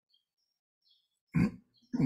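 Near silence on a call line, then about a second and a half in one short, low grunt-like sound from a person's voice.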